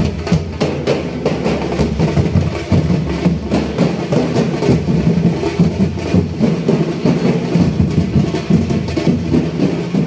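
Fast, dense drumming: percussion music with many rapid strikes, steady and loud.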